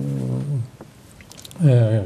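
A man's speech: a drawn-out hesitation vowel held on one pitch, a pause of about a second, then talking resumes.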